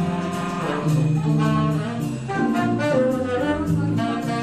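Live jazz: a saxophone playing a melody of held notes over keyboard chords and a bass line.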